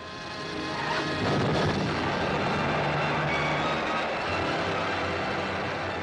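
A long, loud blasting rumble, like a dynamite explosion and its roll of falling rock, swelling about a second in and holding steady. Music runs faintly underneath.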